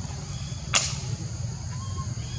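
Outdoor background with a steady low rumble and a faint high steady tone, broken by a single sharp click about three-quarters of a second in.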